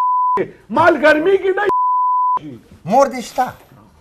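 Two steady 1 kHz tones of a broadcast censor bleep, each blanking out the talk completely: the first ends just after the start, the second lasts under a second from a little before the midpoint.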